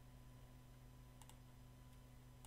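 Near silence with two quick, faint computer keyboard key clicks a little over a second in, over a low steady hum.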